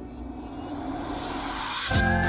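A whoosh transition effect: a rushing noise sweep that climbs steadily in pitch and cuts off sharply at the end.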